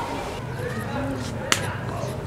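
People's voices talking in the background, with one sharp click about one and a half seconds in.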